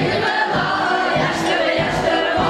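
A group of voices singing a Ukrainian folk song together, over a steady low beat.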